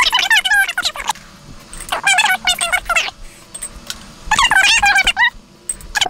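High-pitched, chipmunk-like sped-up voice chatter in three short bursts, from talking played back fast over time-lapsed footage.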